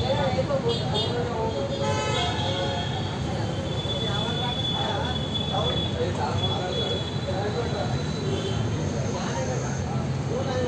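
Indistinct voices talking over a steady low hum.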